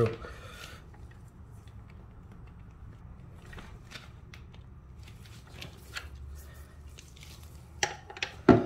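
Faint, scattered clicks and taps of a long ratchet and socket being handled on a motorcycle's rear axle nut, over a low steady hum.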